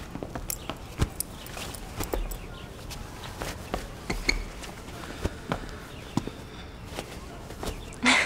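Scattered light footsteps and small knocks at irregular intervals, with the rustle of clothing as someone moves about a room.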